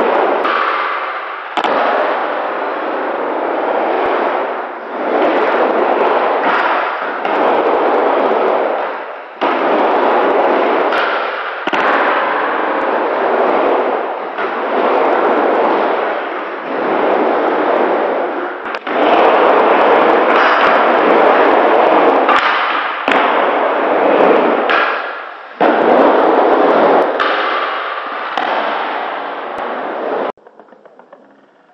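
Skateboard wheels rolling on a wooden mini ramp: a loud rolling roar that swells and fades with each pass across the ramp, broken by sharp clacks and knocks of the board and trucks hitting the ramp.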